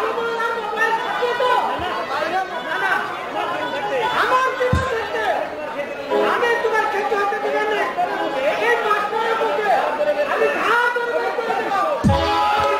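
Actors' voices speaking lines in stage dialogue, more than one voice, with a single dull low thump just before five seconds in.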